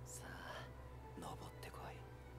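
Faint, soft-spoken voice dialogue from the anime playing quietly in the background, in two short phrases, over a steady low hum.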